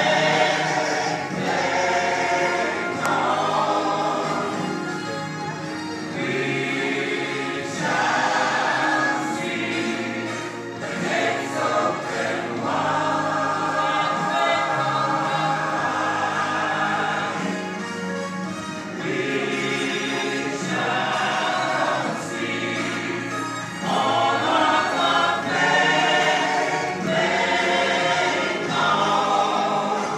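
Mixed church choir of men's and women's voices singing together in phrases of a few seconds, some notes held long.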